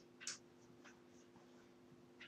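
Near silence: room tone with a faint steady hum, and one brief soft hiss about a third of a second in.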